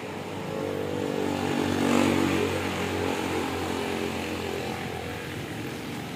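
An engine passing by, a steady pitched hum that grows louder to a peak about two seconds in and then slowly fades.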